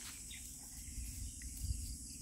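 Insects chirring steadily at a high pitch in grassland, over an uneven low rumble of wind on the microphone that swells a little in the second second.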